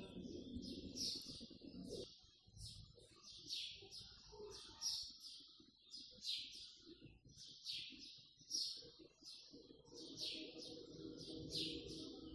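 Faint, high-pitched bird chirps repeating about one or two times a second, over a low, faint background rumble.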